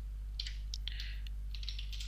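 Computer keyboard being typed on: a quick run of light key clicks starting about half a second in and stopping shortly before the end, over a steady low hum.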